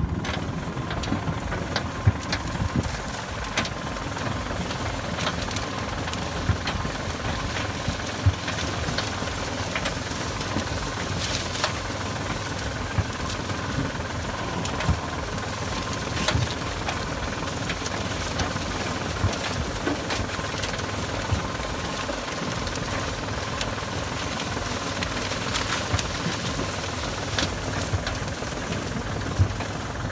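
Small red farm tractor's engine running steadily as it hauls a load of harvested corn, with scattered short knocks and rattles over the engine.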